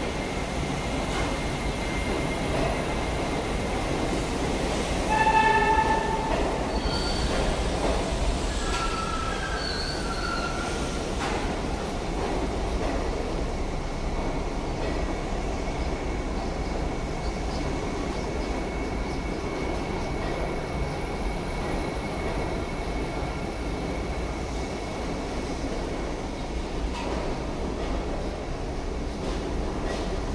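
New York City subway train rolling slowly through the station, with steady wheel-on-rail rumble. A brief high screech comes about five seconds in, then wavering wheel squeals for a few seconds after.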